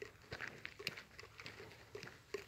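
Faint footsteps crunching on a gravel road, a few soft irregular steps and scuffs.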